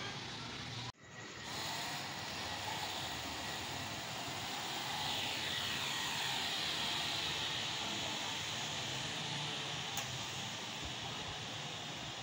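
Small white toy quadcopter drone's propellers buzzing steadily. The sound cuts out briefly about a second in.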